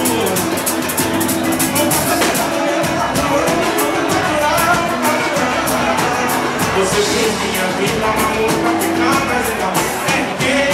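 Live pagode band playing: Brazilian percussion (surdo, tantan, repique, pandeiro) with cavaquinho and electric bass, and a man singing lead into a microphone.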